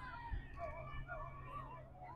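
Faint, distant voices whose pitch wavers up and down, over a low steady hum.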